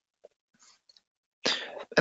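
A man's short cough about one and a half seconds in, after a few faint mouth clicks.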